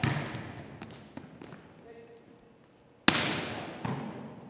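Volleyball impacts echoing in a gym during a defensive drill: the ball played by a defender at the start, then about three seconds in a loud slap of a ball being hit, followed under a second later by the softer contact of the defender playing it.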